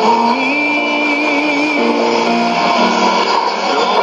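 Music from FEBA Radio's English shortwave broadcast on 9775 kHz AM, played through a Sony ICF-2001D receiver's speaker, with a steady hiss of shortwave noise beneath it.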